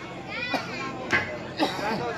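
Chatter of several voices, some of them high-pitched, with three sharp clicks about half a second apart.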